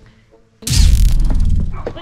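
A sudden loud boom about half a second in, with a deep rumble that dies away over about a second.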